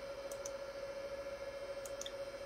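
A few faint mouse clicks, two close together about a third of a second in and one more near the end, over a steady background hum with a thin steady whine.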